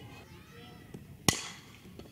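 A single sharp crack of a bat striking a softball about a second in, over faint stadium background.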